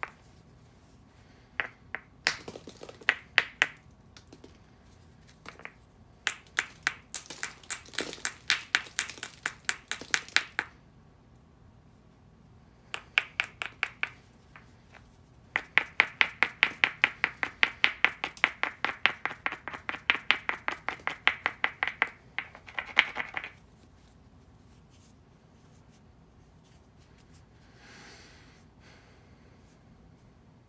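A cobble hammerstone tapping and scraping rapidly along the edge of an Onondaga chert spall, stone on stone, in runs of quick sharp clicks several a second, broken by short pauses; the longest run comes about halfway in. This is the light edge work a knapper does to prepare a striking platform before a heavy blow.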